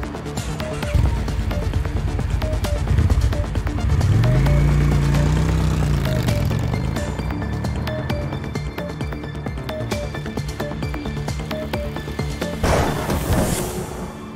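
Background music with a steady beat. A motorcycle engine swells and falls in pitch as it rides past, about four seconds in. A whoosh rises near the end.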